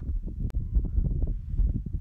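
Wind buffeting a phone's built-in microphone: an uneven low rumble, with one sharp click about halfway through.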